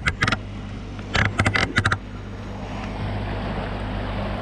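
A bass boat's 250 hp outboard motor running with a steady low hum. Short knocking or buffeting sounds come in quick bursts at the start and again about a second in.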